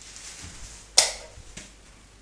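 A single sharp click of a light switch being flipped about a second in, after soft rustling handling noise.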